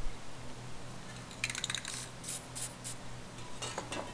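Spray paint can being shaken: a run of quick sharp clicks from the mixing ball, then a few spaced clicks and another short rattle near the end, over a low steady hum.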